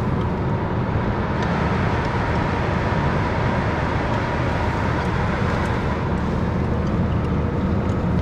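Steady road and engine noise inside a moving car's cabin: an even low rumble with hiss.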